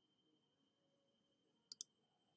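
Near silence, broken near the end by two short, sharp clicks in quick succession.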